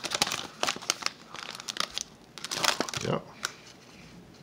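Foil wrapper of a 2020 Donruss Football card pack crinkling and tearing as it is peeled open and pulled off the cards, a dense crackle for the first two and a half seconds that then dies away.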